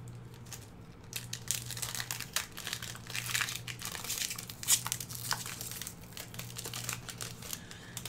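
A Magic: The Gathering Onslaught booster pack's foil wrapper being torn open and crinkled, a dense irregular crackling that starts about a second in and goes on until near the end.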